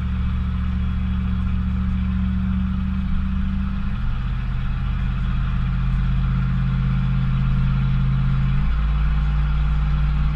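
Ford 460 big-block V8 (7.5 litre) of a pickup pulling a heavy trailer, heard from inside the cab. A steady low engine note that steps abruptly to a new pitch twice, about four seconds in and again near the end.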